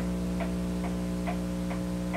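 Wall-mounted pendulum clock ticking evenly, a little over two ticks a second, over a steady electrical hum.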